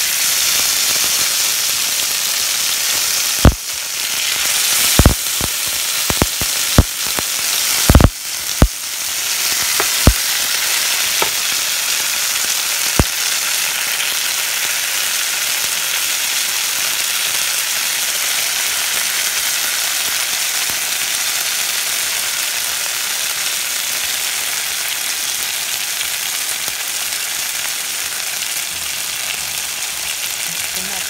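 Sardines frying in olive oil in a nonstick pan, a steady sizzle throughout. A scatter of sharp pops and clicks comes between about three and thirteen seconds in, while the fish are turned with tongs.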